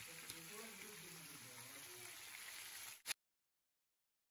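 Faint, steady sizzle of marinated chicken pieces shallow-frying in oil in a kadai, with a small click about a third of a second in. Just after three seconds a sharp click, and the sound cuts off abruptly to dead silence.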